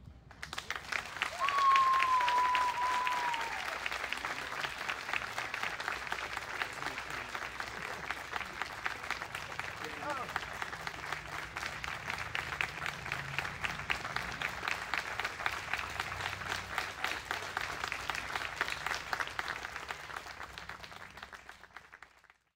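Audience and band members applauding steadily for about twenty seconds, fading out near the end. A long, high whistle, falling slightly in pitch, rings out over the clapping near the start, where it is loudest.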